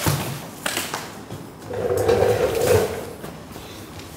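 A 1JZ cylinder head being handled and turned over on cardboard: a couple of knocks early on, then a longer stretch of scraping and rustling about halfway through.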